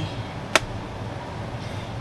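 A single sharp click about half a second in: a wooden pastel pencil knocking against its metal tin as it is lifted out. A steady low hum runs underneath.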